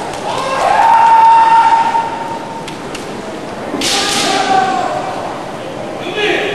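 Kendo kiai: a fencer's long shout held on one pitch for more than a second, then about four seconds in a short sharp noisy burst followed by a shorter shout. Two faint taps come just before the burst.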